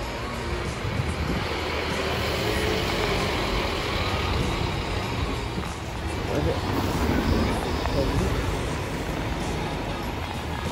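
City bus engine running as the bus moves past at close range, over a steady rumble of street traffic, swelling slightly a little past halfway.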